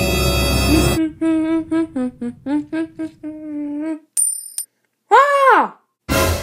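Dark, menacing music cuts off about a second in. A voice follows with a villain's laugh in a string of short syllables at the same pitch. Then comes a short high ding and a long cry that rises and falls in pitch.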